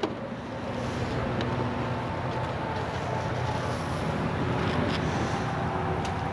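Power liftgate of a Dodge Grand Caravan opening, its drive motors giving a steady hum for several seconds.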